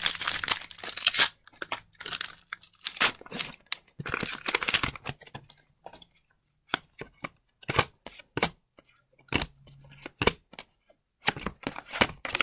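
A hockey card pack's foil wrapper being torn open and crinkled by hand, in a string of short rustling bursts with brief pauses, densest in the first second.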